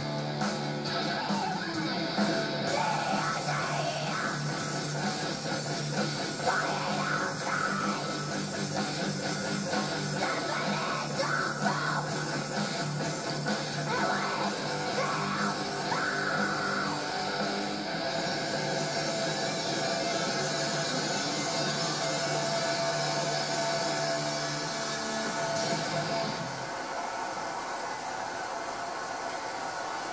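Heavy-metal band with electric guitars and drums, a young girl screaming the vocals, heard through a television speaker. At about 26 seconds in the music stops and the studio crowd cheers.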